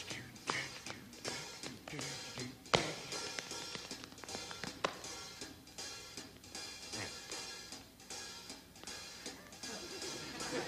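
Soft taps and scuffs of dance steps on a stage floor, with three sharper strikes about three, five and seven seconds in, over faint band music.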